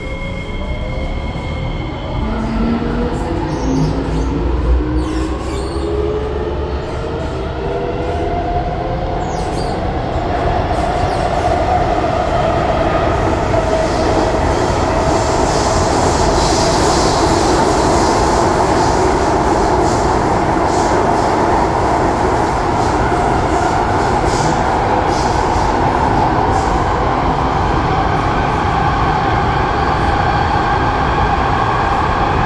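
Inside a C751B metro train car as it pulls away and speeds up: the traction motors whine in several rising tones for about the first ten seconds, then hold steady over the running noise of steel wheels on rail in the tunnel, which grows a little louder. A few faint clicks and rattles are heard along the way.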